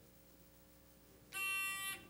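Quiz-game buzzer going off once, a steady electronic tone of about half a second about a second and a half in: a contestant buzzing in to answer.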